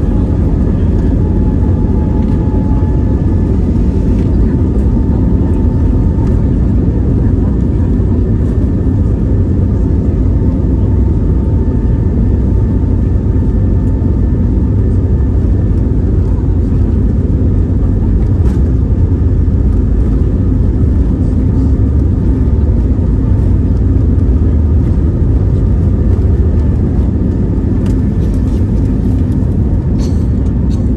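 Airbus A320neo's CFM LEAP-1A engines at takeoff thrust during the takeoff roll, heard from inside the cabin: a loud, steady low rumble with a faint steady whine above it, as the aircraft accelerates down the runway toward rotation. A few faint knocks come near the end.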